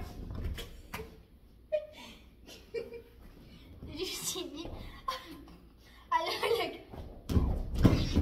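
A girl's voice making short, unclear vocal sounds, with a few sharp knocks and a heavy thud near the end.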